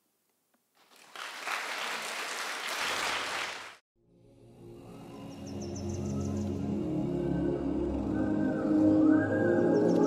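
Audience applause for about three seconds, cut off abruptly, followed by closing-theme music with held chords that fades in and grows louder.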